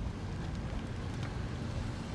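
Wind rumbling on the microphone: a steady low noise with a fainter even hiss above it.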